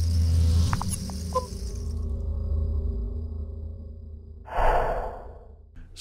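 Intro logo sound effect: a low drone with a few small chime-like clicks and notes about a second in, then a breathy whoosh near the end that fades away.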